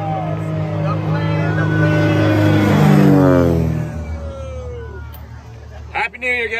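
A motor vehicle passing close by: its sound swells to a peak about three seconds in, then falls in pitch and fades as it moves away. Voices are heard underneath.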